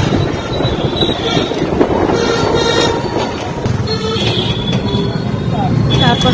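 Busy street traffic noise with two short, high-pitched horn beeps, about a second in and again past four seconds.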